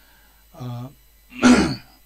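A man clears his throat once, a rough, noisy burst about a second and a half in, after a short low hum.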